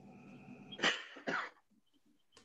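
A person coughing twice, two short sharp coughs about a second in, over a faint steady hum.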